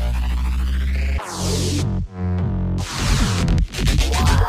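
Electronic dubstep track. A held deep bass cuts off a little over a second in, a short break with sweeping sounds follows, and a fast stuttering beat comes in near the end.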